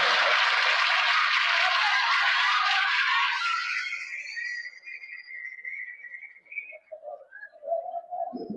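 Studio audience applauding, the applause dying away about four seconds in.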